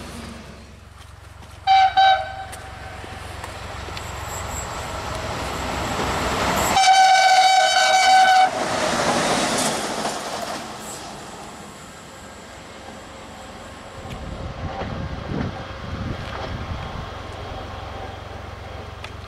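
Train horn sounding two short blasts about two seconds in, then one long blast, the loudest sound, as an electric train passes with a rumble of wheels on rails that swells and then fades.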